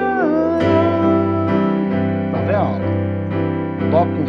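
Digital keyboard in a piano voice playing held chords of the song's F to C-over-G progression, striking a new chord about half a second in and letting it ring.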